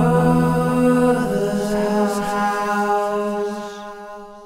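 Music: the song's closing sung note, held long and steady over its accompaniment, fading away in the last second.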